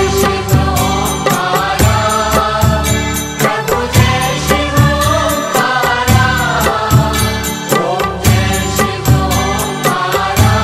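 Hindu devotional music: chanted vocals over a steady drum beat.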